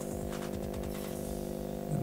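A steady droning hum of several held pitches coming through the video-call audio, an unwanted vibrating sound on the line.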